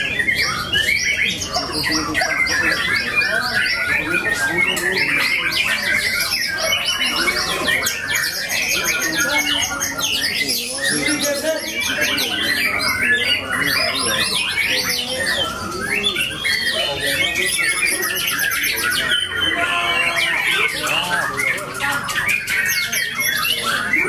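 Several caged songbirds, white-rumped shamas among them, singing at once: a dense, unbroken tangle of loud whistles and fast trills with no pause.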